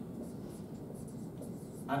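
Marker writing on a whiteboard: faint, short, high-pitched strokes.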